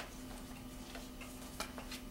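Soft, irregular rustles and ticks of paper sheets being handled and turned at a table, over a steady low hum.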